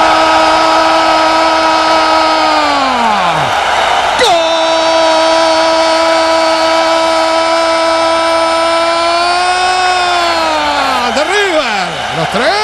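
Spanish-language football commentator's long drawn-out goal cry, held on one steady pitch for about three seconds and sliding down. After a quick breath it is held again for about six seconds, lifting slightly before it falls away. Stadium crowd cheering underneath.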